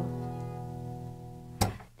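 Acoustic guitar's final E sus2 chord ringing out and slowly fading. Near the end a short sharp knock cuts the ringing off as the strings are stopped.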